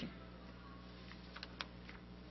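Quiet pause in a room with a steady low hum and a few light, short clicks in the second half.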